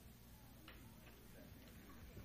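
Near silence: low room tone with two faint clicks, the first a little under a second in and the second about a second later.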